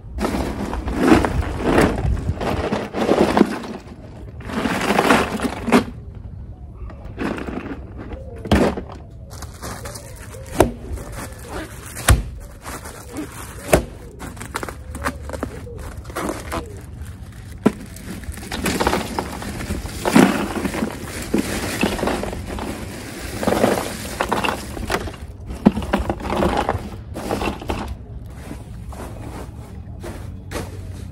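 Ice cubes crunching and rattling in rough bursts, with a few sharp knocks, as bagged ice is broken up and handled into a plastic cooler for an ice bath.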